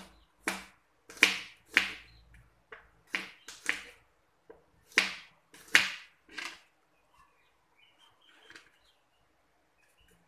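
Cleaver chopping peeled garlic cloves on a plastic cutting board: about a dozen irregular knocks of the blade on the board, then the chopping stops about two-thirds of the way through.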